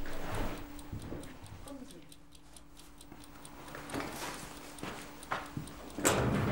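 A clock ticking steadily in a quiet room, with a few footsteps or knocks on the floor, the loudest near the end.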